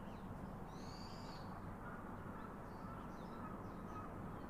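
Birds calling over a steady low background rumble: a short arched high call about a second in, then a long, faint, even whistle through the second half.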